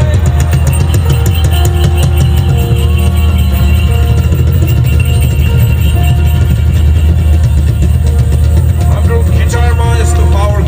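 Band music with a heavy, steady bass and long held notes over it; a voice comes in near the end.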